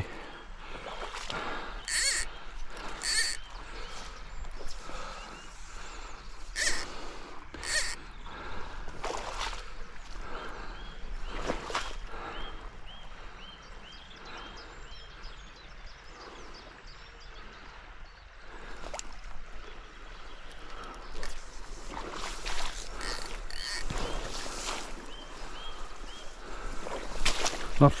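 Rustling and soft steps through long wet grass on a boggy riverbank, with the odd faint bird chirp.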